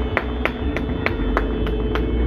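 Rhythmic hand clapping, about three claps a second, over a steady droning tone and a low traffic rumble.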